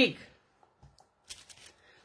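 The last syllable of a woman's speech, then a few faint, brief rustles of small things being handled.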